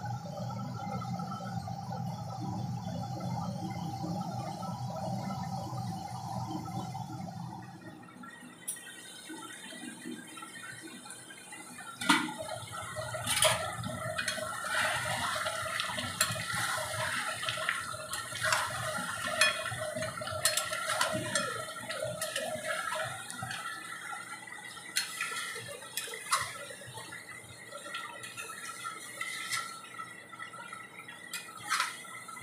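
A steady low hum for the first few seconds, then a metal spatula stirring chicken curry in a steel karahi: repeated scraping and knocking against the pan over the bubbling of the simmering gravy.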